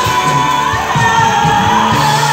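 Live band music with a singer's voice, loud and steady: a held note and a sung melody over the band.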